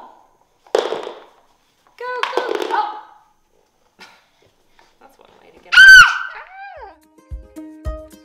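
A toddler's short vocal sounds, then a loud, very high-pitched squeal about six seconds in that falls in pitch. Near the end, plucked-string music with a regular beat starts.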